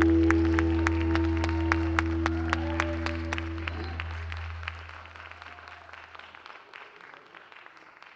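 A rock band's final held chord and bass note ringing out and dying away over audience applause, both fading out toward the end.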